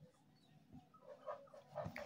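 Near silence: room tone, with a few faint, brief sounds in the second half.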